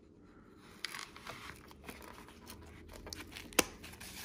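Fixed-blade knife sliding into a nylon sheath, with soft scraping and fabric rustling as it is worked in, then one sharp click near the end as the sheath's retention-strap snap is pressed shut.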